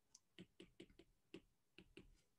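Faint clicks and taps of a pen stylus on a tablet screen during handwriting, about eight small irregular taps.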